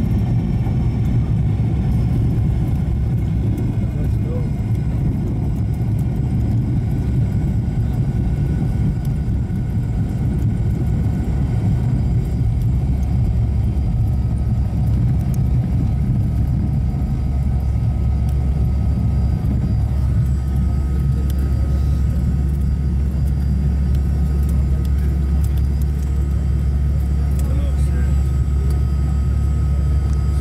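Cabin noise of a Fokker 100 airliner taxiing after landing: a steady low rumble from its rear-mounted Rolls-Royce Tay turbofans at taxi power. A faint steady whine joins about two-thirds of the way in.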